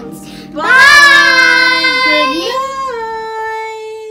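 A child singing one long, drawn-out note over background music, coming in about half a second in and stepping down in pitch near the end.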